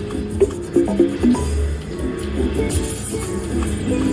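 Goldfish Feeding Time video slot machine playing its game music, with a quick run of short bright notes about half a second to a second and a half in.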